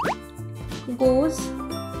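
Light children's background music with a short, bubbly cartoon 'plop' sound effect about a second in.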